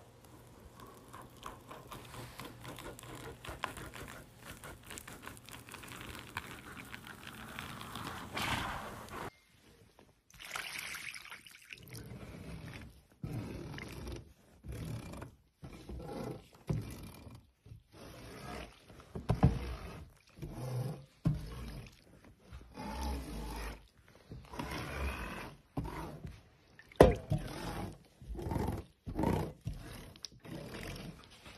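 A metal scraper wiped over and over across a silicone honeycomb mould full of freshly poured wax, clearing off the excess, in short strokes about a second apart with brief pauses between. Before that there are several seconds of a steady faint crackling hiss.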